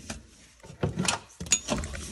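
Handling noise: light knocks and rubbing against hard plastic interior panels, in two short clusters, about a second in and again just after a second and a half.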